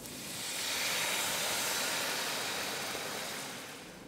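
Coconut milk sizzling as it is poured into hot oil and fried chilli-shallot spice paste in a pan: a steady hiss that swells over the first second and dies away near the end.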